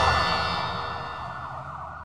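Tail of a TV programme's title-ident sting with a siren-like wail in it, fading out steadily over about two seconds.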